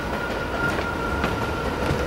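Steady low rumbling background noise with a faint high ring running through it and a few light clicks.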